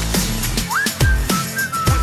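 Whistled hook of a pop-rap song: a short melody of whistled notes, one sliding up into a high held note, over an electronic beat with deep bass kicks.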